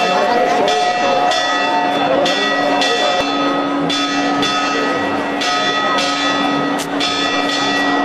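Church bells ringing a fast peal, struck about twice a second, their tones ringing on between strikes, over the chatter of a crowd.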